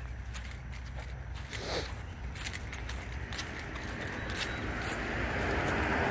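Footsteps on a grass lawn with a steady low rumble of wind on the microphone; near the end a broad rushing noise swells up.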